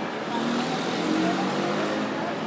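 A car driving past on the street, its engine hum swelling about half a second in and fading near the end, over the murmur of people talking at the café tables.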